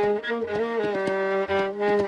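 Violin playing a Hindustani classical melody in Raag Jog, holding notes and gliding down between them, with tabla strokes beneath.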